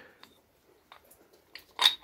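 Two aluminium Storz-type fire-hose quick couplings being fitted together: a few light metal clicks, then a sharper clack near the end as the halves lock.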